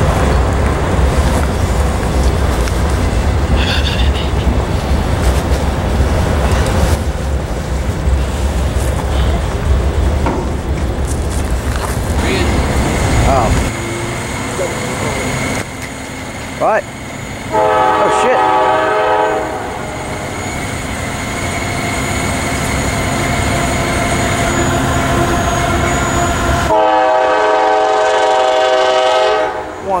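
Freight train of autorack cars rolling past with a steady low rumble. After a cut, the horn of an approaching CSX freight led by a GE AC4400CW sounds twice: a blast of about two seconds some 18 seconds in, and a longer blast of about three seconds near the end.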